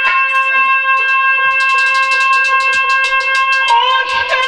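Harmonium holding a steady chord, with a rapid run of light percussion strokes, about eight or nine a second, joining in from about a second and a half in; the held notes shift just before the end.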